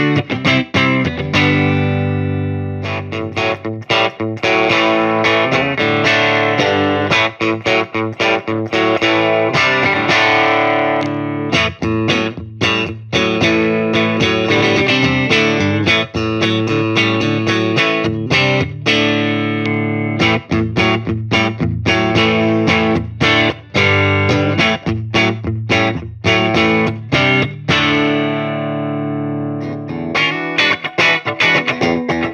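Fender Road Worn '72 Telecaster Deluxe electric guitar with Creamery replacement Wide Range humbuckers, played with a clean tone: strummed chords and picked notes with brief pauses between phrases.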